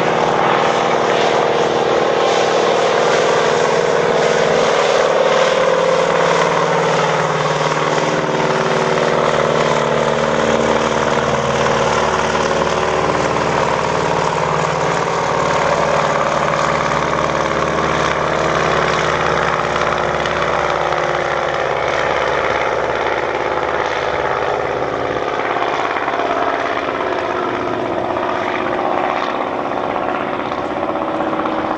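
Single-engine floatplane's propeller engine running at takeoff power as the plane skims across the water and lifts off, a steady engine note that eases slightly near the end as it climbs away.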